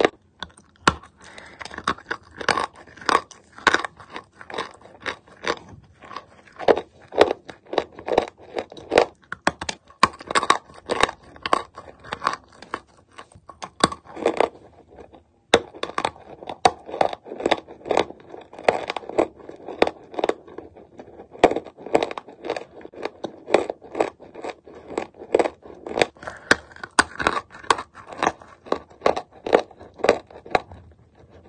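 Dry chalk being bitten and chewed close to the microphone: a steady run of sharp, dry crunches, two or three a second, with a brief break about halfway through.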